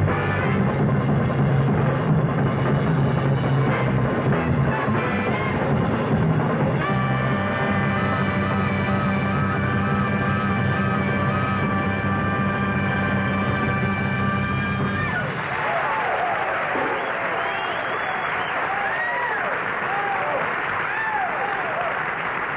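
Two drum kits played together, ending on a long held band chord over drum rolls that cuts off sharply about fifteen seconds in. A studio audience then applauds and cheers, with whistles.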